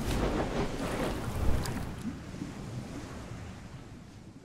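Logo-animation sound effect: a rushing wash of noise with two sharp clicks, one at the start and one about a second and a half in, fading steadily away.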